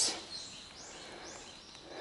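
Quiet forest ambience with three faint high-pitched chirps about half a second apart.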